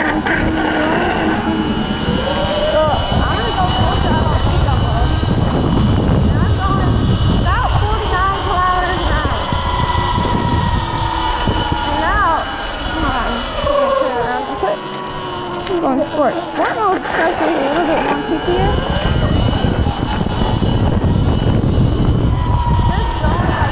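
Heavy wind rush on the microphone while riding a Sur-Ron Light Bee X electric dirt bike in eco mode, with a steady thin high whine above it and wavering tones rising and falling in the middle range. The rush drops off briefly about two-thirds of the way through, then comes back.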